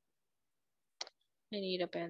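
Silence, broken about a second in by a single short click, then a woman starts speaking near the end.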